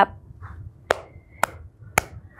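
Three hand claps, about half a second apart.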